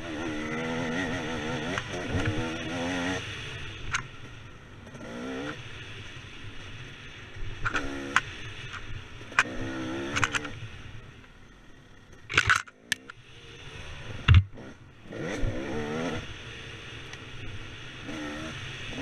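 KTM 300 two-stroke dirt bike engine revving up and down as the rider works the throttle on a trail. Sharp knocks and clatter are scattered through it, with the loudest knock about fourteen seconds in, just after the throttle closes briefly.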